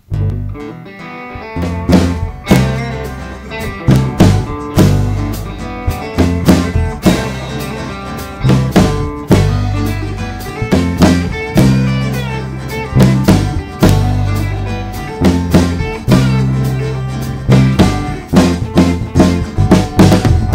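A live rock band playing an instrumental passage: acoustic and electric guitars over a drum kit with a steady beat. The music starts right at the beginning.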